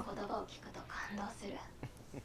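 Only soft, low-level speech, partly whispered. There is no other sound.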